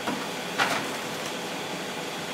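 Food items being handled in an open fridge: two brief handling noises, the second and louder about half a second in.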